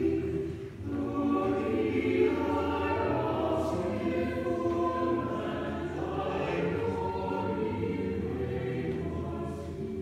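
Church choir singing a slow piece, several voices holding long notes together.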